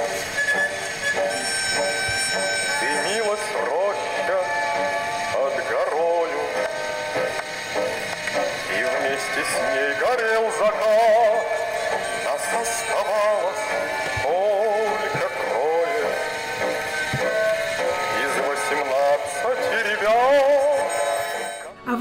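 A song with a singer over instrumental accompaniment, played from a record on a portable wind-up gramophone; the voice wavers with vibrato, and the sound has little bass.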